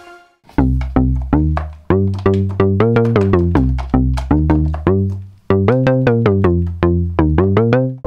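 Softube Model 82, a software emulation of the Roland SH-101 monosynth, played from a keyboard with a short, snappy techno bass patch. It plays a changing line of bass notes, about two to three a second, each a quick pluck whose brightness falls away fast, with a short break about five and a half seconds in.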